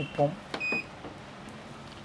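Short high electronic beep from the touch control panel of a vibration-plate massager as a button is pressed to set its speed, just after a soft click.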